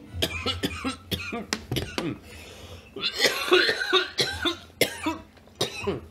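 A man coughing repeatedly in a fit of short coughs: a quick run of them in the first two seconds, then a few more near the end.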